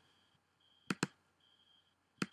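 Two quick computer mouse clicks, about a tenth of a second apart, just under a second in. A faint high-pitched whine comes and goes behind them.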